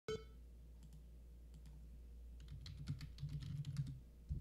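Typing on a computer keyboard: a few scattered keystrokes, then a quick run of keys in the second half. A low steady hum sits underneath, with a sharp click at the very start.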